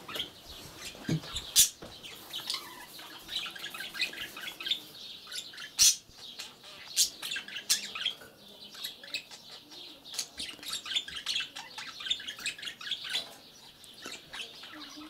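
Caged budgerigars chirping and chattering: a run of short, high twittering calls, broken by a few sharp clicks.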